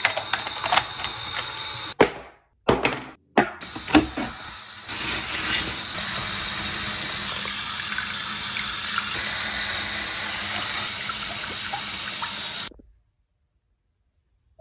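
Tap water running steadily into a bathroom sink over a washcloth held in the stream, stopping abruptly about a second before the end. In the first few seconds there are short clicks and knocks from a plastic mouthwash bottle being handled.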